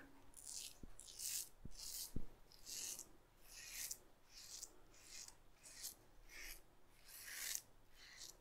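Romer 7 S1 hybrid safety razor, open-comb side fitted with a Bic Chrome Platinum blade, scraping two-day stubble through shaving lather in about a dozen short, faint strokes, one or two a second.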